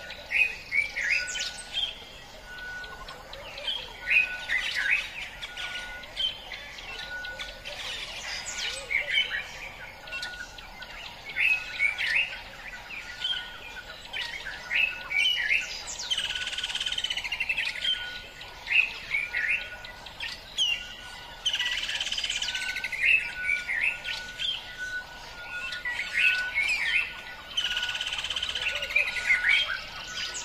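Many wild birds chirping and calling at once, with a few louder trilled phrases. Underneath, a short steady note repeats about once a second.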